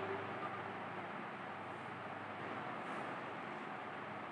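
Low steady hiss of room noise, with a faint scratch of chalk on a blackboard about three seconds in.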